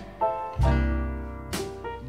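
Slow electric blues band music between sung lines: a guitar fill answers the vocal, one note ringing over the bass and slowly fading, with light cymbal taps near the end.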